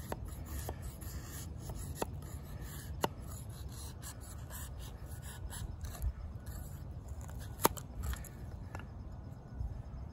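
D2 steel blade of a Schrade Old Timer 169OT fixed-blade knife shaving curls off a wooden stick: soft, repeated scraping strokes with a few sharp ticks.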